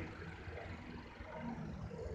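A quiet pause with a low, steady background rumble and no distinct event.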